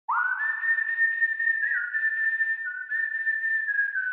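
A person whistling a slow melody: a single breathy high tone that slides quickly up at the start, then holds a few long notes, stepping a little up and down between them.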